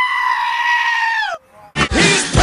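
A goat screaming: one long held call that slides up at the start and drops away in pitch as it ends. Music cuts back in near the end.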